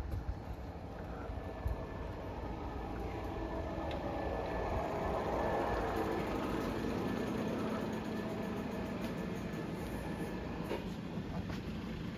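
Electric garage door opener running as the door rises, a steady mechanical drone that grows louder over the first few seconds and then holds.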